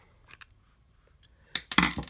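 A screwdriver backing the last small screw out of a plastic trimmer throttle handle, with a few faint ticks. Then, about a second and a half in, a short, loud clatter of sharp metallic clicks as metal parts land on the tabletop.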